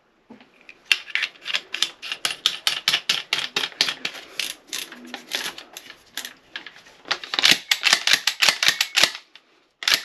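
Magazine tube cap of a pump shotgun being screwed on by hand, clicking rapidly and steadily for several seconds, louder and denser near the end as it is tightened down.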